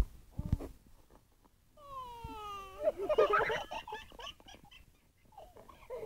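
A child's high voice sliding down in pitch for about a second, then a choppy burst of giggling. There is a soft knock at the start.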